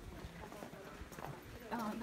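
A few light, irregular footsteps on gravel and stone. A person starts speaking near the end.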